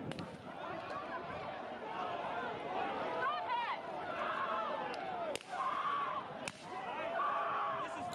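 Crowd of protesters shouting and yelling over one another as they run, with a few sharp cracks among the voices, the clearest about five and a half and six and a half seconds in.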